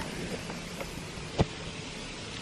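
Low, steady background noise with one short, sharp click about one and a half seconds in.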